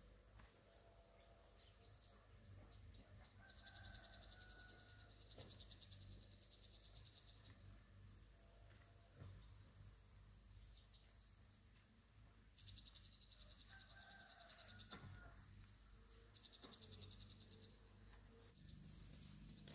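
Faint outdoor ambience. A high, pulsing buzz comes in three times, for a few seconds each, with short bird calls and chirps between and a few soft clicks.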